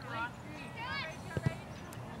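Voices calling out on and around a soccer field, with two sharp knocks close together about a second and a half in.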